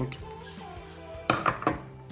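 Combination wire stripper biting into and pulling the plastic insulation off a thin guitar wire: a quick cluster of sharp clicks about a second and a half in.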